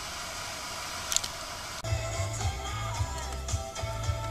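FM radio hissing with static, its reception drowned out by interference from a switched-on LED driver. About two seconds in, music with a steady bass beat starts.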